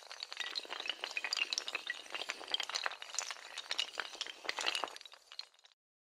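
Sound effect of many small hard blocks toppling and clattering: a dense run of quick clinks and knocks that cuts off suddenly near the end.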